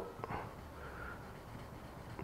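Faint rubbing of sandpaper wrapped on a short wood stick against hardened clear coat, sanding down small high spots.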